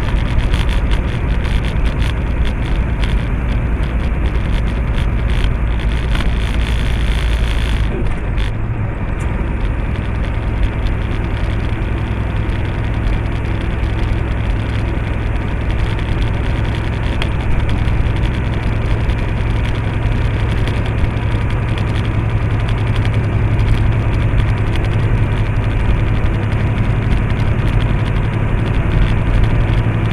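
Inside the cab of a semi-truck cruising down a highway: a steady engine drone with tyre and road noise. About eight seconds in the sound shifts, the hiss dropping away and the deep drone moving a little higher.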